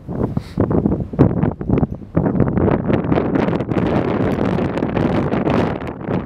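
Wind buffeting the camera microphone: a loud, uneven rushing that rises and falls in gusts.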